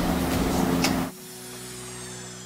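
A steady rushing noise that cuts off suddenly about a second in, leaving background music with a held chord that begins to fade.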